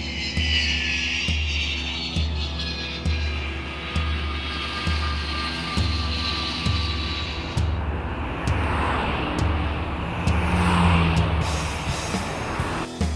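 Jet airliner passing low overhead, its engine whine falling in pitch, over rock music with a steady pulsing bass beat.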